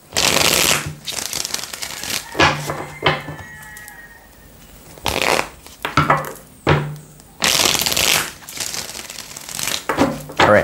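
A tarot deck being shuffled by hand: about four bursts of cards riffling and rubbing, with quieter pauses between.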